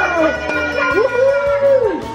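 Background music with a baby's drawn-out vocal squeal that rises and falls in pitch in the second half.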